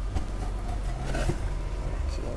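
Steady outdoor background noise with a low rumble, like road traffic running steadily.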